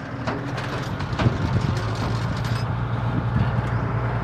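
Crane truck's engine running steadily under a broad road-and-air noise, with a few short knocks and rattles of gear in the open truck bed.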